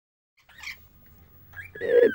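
An angry lorikeet calling: a brief harsh screech about half a second in, then a high rising squawk near the end.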